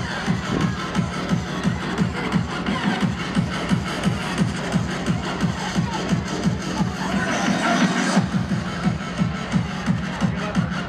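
Electronic dance music from a DJ set played loud in a hall, with a steady kick drum at about two to three beats a second. About three-quarters of the way through, the bass drops out briefly under a rising hiss, then the beat comes back in.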